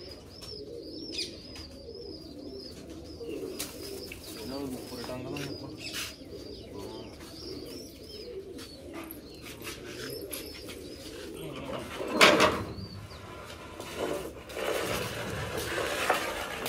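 Domestic pigeons cooing steadily, with scattered clicks and knocks. A quick high warbling call repeats for the first couple of seconds. A short loud rush of noise about twelve seconds in is the loudest sound.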